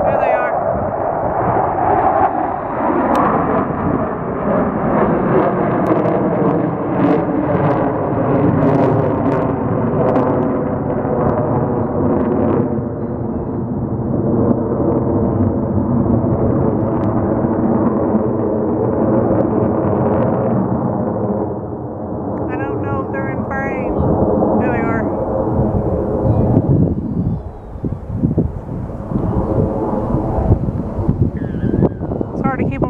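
Jet engine roar from a formation of four military jets flying past overhead. It is a loud, steady rushing noise with a hollow, slowly shifting phasing tone as the jets move across the sky. It eases slightly a little past the middle and swells again near the end.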